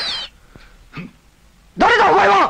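Cartoon steam-train hiss with high whistling glides that cuts off about a quarter second in. After a quiet stretch with a couple of faint knocks, a woman shouts "Who are you?!" near the end.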